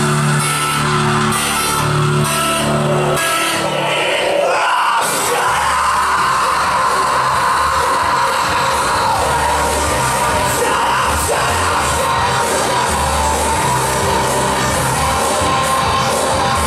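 Live industrial rock band music, loud, with the male singer yelling into the microphone over a pulsing bass line; the bass cuts out briefly about four seconds in before the song drives on.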